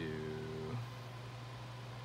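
A man's voice drawing out one word for under a second, then only a steady low hum.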